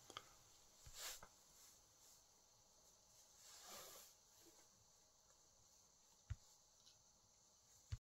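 Near silence: faint room tone with a few soft, short knocks, about a second in, near six seconds in and at the very end.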